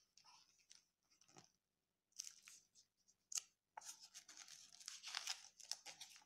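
Faint rustling and scraping of a picture book's paper pages being handled and turned, with one sharp tick a little over three seconds in and busier rustling near the end.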